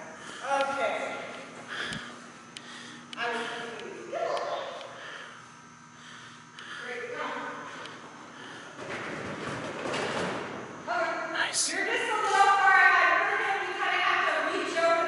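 Voices of people talking indistinctly in a large hall, with a single thud about two seconds in and a short stretch of noise about two-thirds of the way through.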